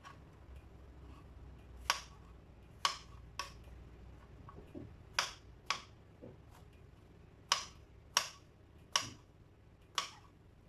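Kitchen knife chopping mushrooms on a plastic cutting board: about eight sharp knocks of the blade on the board at irregular intervals, the first about two seconds in.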